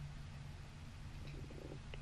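Faint room tone: a steady low hum with a light hiss.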